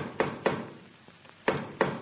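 Knocking on a wooden door, a radio-drama sound effect: three quick raps, then two more about a second later. It is a set signal knock that the people inside recognise as one particular man's.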